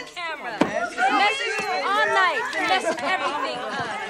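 Several voices talking over one another: chatter.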